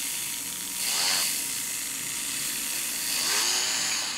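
Proxxon Micromot rotary tool spinning a yellow buffing wheel at around 7,000 to 10,000 RPM while the wheel is loaded with Zam polishing compound, making a steady high hiss.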